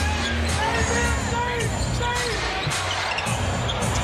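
Live basketball game sound in an arena: a basketball dribbling on the hardwood court, with music from the arena's PA playing underneath.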